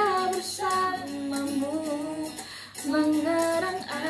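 A young woman singing a slow Indonesian pop ballad, holding and bending long notes with vibrato, with a short breath break about two and a half seconds in.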